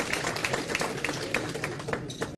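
Audience applauding: many hands clapping irregularly.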